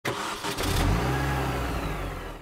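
Racing car engine sound effect, a car speeding past with its pitch falling, starting abruptly and fading out near the end.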